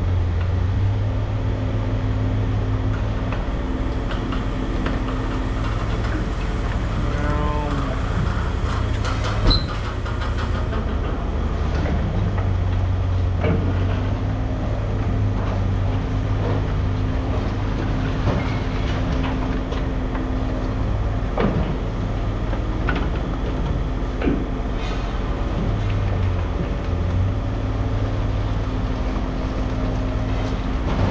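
Heavy diesel machinery running steadily, with scattered clanks and rattles of scrap metal as a grapple works the pile. One sharp bang about nine and a half seconds in.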